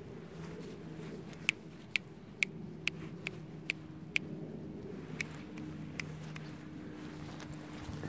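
A steady low mechanical hum with a run of about seven sharp clicks, roughly two a second, in the first half.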